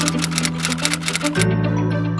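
Intro music with a steady bass line, overlaid by a quick run of typewriter key-click sound effects that stops about one and a half seconds in.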